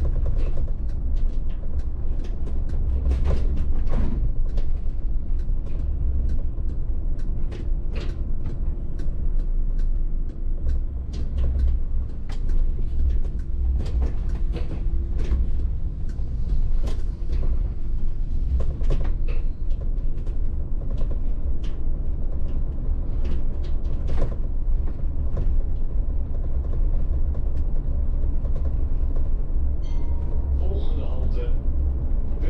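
Cab of a VDL city bus on the move: a steady low rumble from the road and drivetrain, with frequent short, irregular clicks and rattles from the bus's interior fittings.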